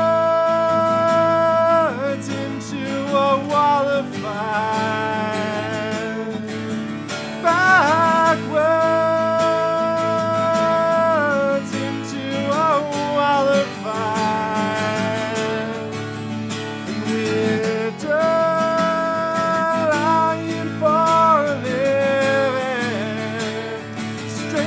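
A man singing long held notes, with slides between them, over a strummed acoustic guitar.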